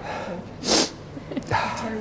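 A short, loud burst of breath from a person, like a sneeze, a little over half a second in, followed by quieter voices.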